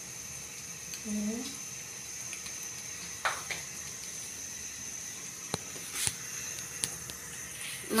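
Egg omelette frying in oil in a pan on a gas stove: a steady, soft sizzle, with a few faint clicks about five to six seconds in.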